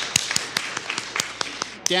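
Scattered hand clapping from a seated audience: a handful of sharp, irregularly spaced claps as the applause dies away.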